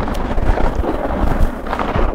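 Steady rumbling noise from a body-worn microphone on an ice hockey goalie, as the mic rubs and buffets against his gear while he moves, with a few scattered knocks.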